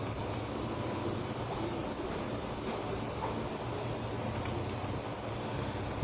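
Steady background noise with a constant low hum and no speech, the room's ambient noise during a pause in the narration.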